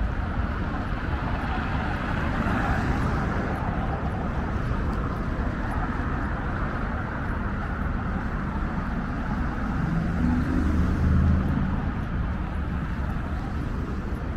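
Road traffic on a wide multi-lane road: a steady hum of cars going past, with one vehicle passing louder about ten to eleven seconds in.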